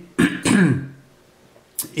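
A man clearing his throat, two short vocal rasps in the first second, the second falling in pitch, followed by a brief click near the end.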